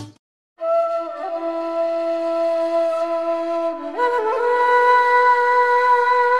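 Background music: after a brief silence, a solo flute plays long held notes, stepping up in pitch about a second in and again about four seconds in.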